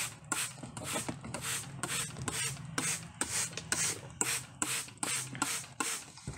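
Rhythmic scratchy rubbing, about three strokes a second, over a low steady hum.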